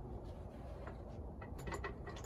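Faint ratchet-wrench clicking over a low background hum: a few soft clicks, coming quicker near the end.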